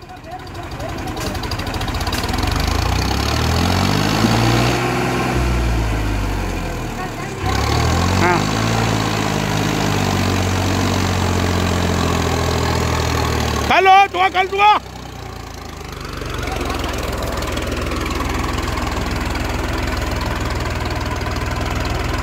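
ACE DI 6565 tractor's diesel engine working hard under the load of an overloaded sugarcane trailer, heavy enough at the back to lift the tractor's front wheels off the road. Its note rises and falls twice in the first half, then runs steady.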